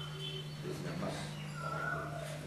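A man speaking over a steady low hum, with a few short, high, steady tones sounding now and then.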